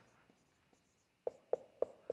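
Marker pen writing on a whiteboard. It is faint for about the first second, then three sharp taps come about a quarter second apart as strokes are put down.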